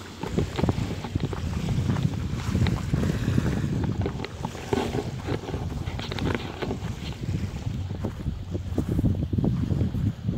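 Wind buffeting the microphone in a steady low rumble, with irregular crunching footsteps on dry, twiggy ground.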